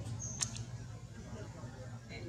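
A brief high-pitched squeak from an infant macaque held against its mother, about half a second in, over a steady low hum.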